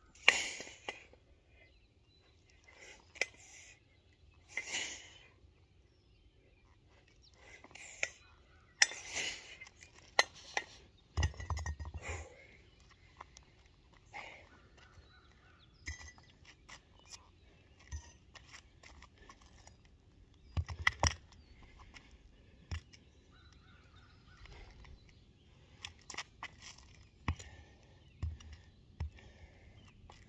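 Hard breathing from a set of kettlebell jerks, a string of forceful exhalations, with scuffs and footsteps crunching on gravel. A few dull thuds come as the heavy kettlebells are set down on the ground.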